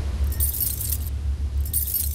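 Title-sting sound effects: two bursts of metallic jangling over a steady low rumble.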